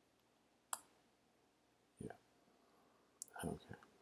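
A few faint, isolated clicks and soft taps from a laptop keyboard and trackpad as the test command is rerun, with near silence between them.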